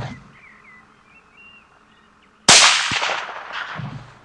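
A single .223 Remington rifle shot about two and a half seconds in, sudden and loud, its report rolling away over about a second. A sharp knock follows close behind, typical of the bullet striking the roe buck. Faint bird chirps come before the shot.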